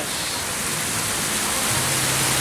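Water fountain running: water from jets falling and splashing down a stepped stone dome, a dense, steady hiss.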